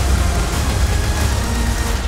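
Loud, steady rumbling roar with heavy bass: film-trailer sound effects of an explosion and burning debris.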